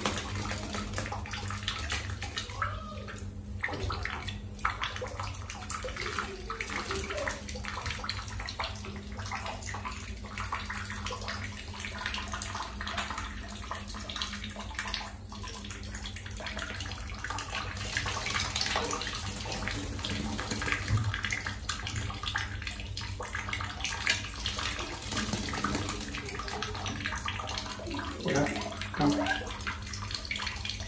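Water splashing in short, irregular bursts as a black-capped lory bathes in a shallow dish, beating its wings in the water.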